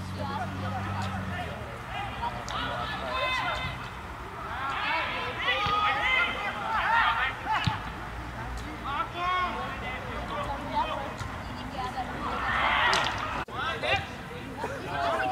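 Indistinct voices of footballers and spectators calling out across the pitch in short shouts, over a background of crowd chatter.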